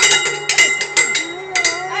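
Light metallic clinking, several irregular strikes a second over a steady ringing, with laughter coming in near the end.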